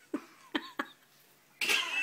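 Short breathy vocal sounds from a person: three quick ones in the first second, then a longer, louder one near the end.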